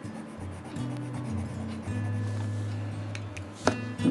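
Coloured pencil rubbing on paper as a stripe is shaded in, with soft background music underneath; a short sharp click near the end.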